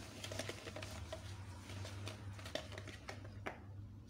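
Hand whisk beating eggs and sugar in a bowl: fast, irregular clicking and tapping of the wires against the bowl, thinning out near the end.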